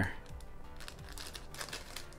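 Faint rustling and light taps as a paperboard kids' meal fries container is handled and turned round on a trunk lid.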